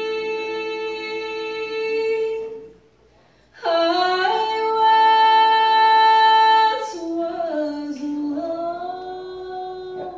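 A woman singing a slow gospel song solo in long, held notes: one phrase, a brief breath about three seconds in, then a second phrase.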